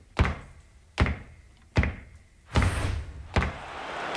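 Heavy percussive impact hits from a TV sports promo's opening sting, about one every 0.8 seconds. Each is a sharp thud with a low boom that dies away quickly; the fourth is led in by a short rushing swell.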